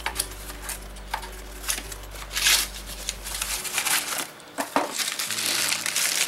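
Small cardboard box being opened and its plastic bags of parts handled: scattered rustles and light clicks, with a louder crinkle about two and a half seconds in.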